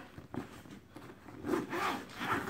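Zipper on a fabric bowling bag's compartment being pulled open, a short rasping scrape about a second and a half in.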